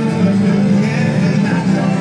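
A live string band playing together: fiddle, banjo, mandolin and acoustic guitars in a steady, continuous tune.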